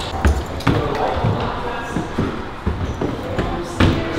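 Footsteps of several people on a hard floor and then up stairs, sharp steps about two a second.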